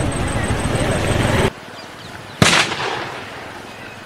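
Loud crowd and outdoor noise that cuts off suddenly about a second and a half in, then a single sharp firecracker bang about two and a half seconds in, with a short fading tail. The cracker is set off to scare the wild elephant away.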